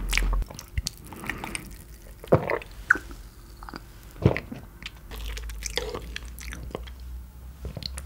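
Close-miked chewing of raw beef sashimi: irregular wet mouth clicks and smacks, with two louder smacks a little over two seconds and about four seconds in.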